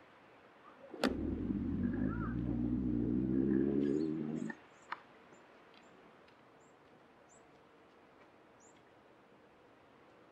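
Camera zoom motor running for about three and a half seconds, starting with a click about a second in and stopping suddenly, as the lens zooms from a wide view in close. Faint high chirps follow.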